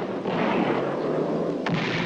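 Film battle sound effects: a steady rumble of shellfire and explosions, with one sharp bang near the end.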